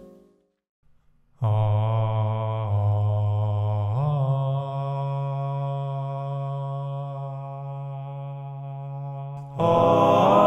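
The last piano notes die away, and after about a second of silence a man's voice sings one long low held note, stepping up in pitch about four seconds in. Near the end more overdubbed voices of the same singer join in a louder chord, an a cappella vocal intro.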